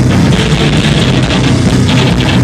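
Live rock band playing loud: electric guitars and drums, filling the sound without a break.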